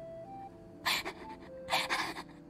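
A young woman laughing in short, breathy gasps, once about a second in and again near the end, over faint background music.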